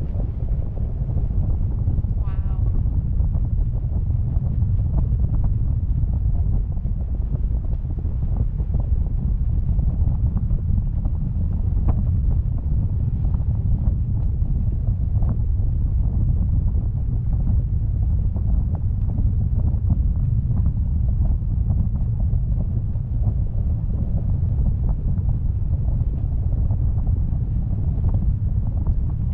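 Wind buffeting the microphone of a camera rigged on a parasail tow bar in flight, a steady low rumble with an irregular flutter. A brief high-pitched sound comes about two seconds in.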